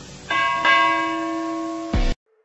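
Bell-chime sound effect, struck twice in quick succession about a third of a second in and again about a third of a second later, the two ringing on together, with a short low thump near the end.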